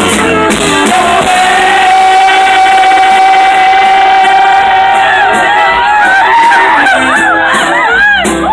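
Live huapango band music with saxophone, played loud: a long held note from about a second in for several seconds, then quick wavering runs of notes near the end.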